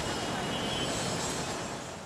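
Steady, even rushing noise of vehicle traffic outdoors.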